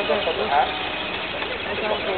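Spectators talking around a scale RC rock crawler as its electric motor and gearbox whir it up a loose dirt slope. Voices are the loudest sound, with a burst of talk about half a second in and again near the end.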